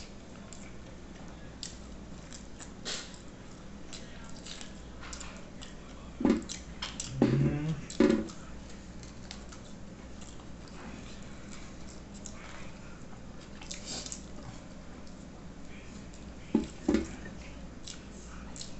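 Close-up mouth sounds of eating cow's-foot mocotó with farofa by hand: wet chewing, sucking and gnawing at the gelatinous bone, with scattered lip smacks and clicks. A few short louder sounds come around six to eight seconds in and again near the end.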